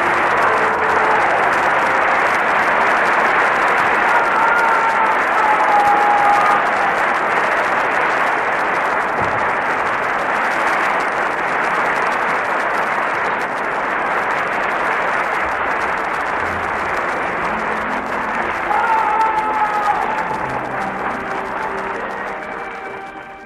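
Audience applauding steadily at the end of an opera aria. A couple of voices call out over the clapping about four seconds in and again near the end.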